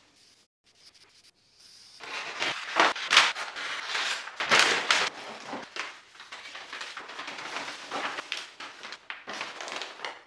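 Kraft paper rustling and crinkling as it is handled on the floor, in irregular strokes of varying loudness that begin about two seconds in.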